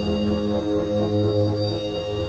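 Experimental synthesizer drone music: layered sustained low tones that swell and pulse, under thin steady high tones.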